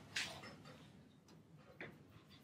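Mostly quiet room with two brief, faint handling noises from a paper sheet and pen being shifted under a document camera: a short rustle just after the start and a small tick near the end.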